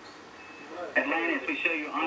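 A man speaking over the Mission Control radio loop, narrow and tinny like a radio transmission, played through a TV speaker. It starts about a second in, after a faint hiss.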